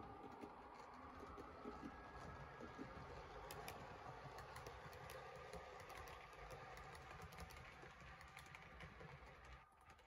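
Faint running of a model train on its layout: small irregular clicks of the wheels over the rail joints with a steady low hum, stopping near the end.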